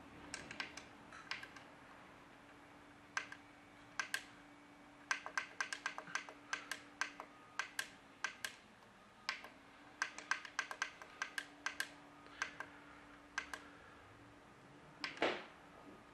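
Push buttons on a 5900-BT water filter control valve's keypad clicking as they are pressed over and over in quick runs, several presses a second, to step a cycle time down to one minute. A faint steady hum runs underneath.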